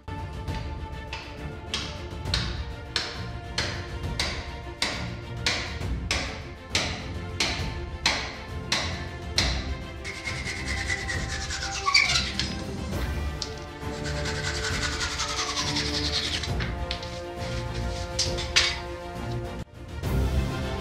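Cordless drill boring into a timber beam, its pitch falling as the motor slows under load, over background music. In the first half there is a regular beat of sharp knocks about twice a second.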